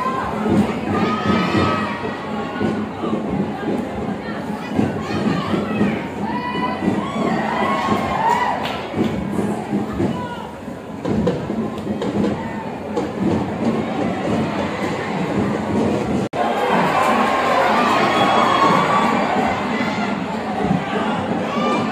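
Football stadium crowd shouting and cheering, many voices overlapping. It cuts out for an instant about sixteen seconds in and comes back louder.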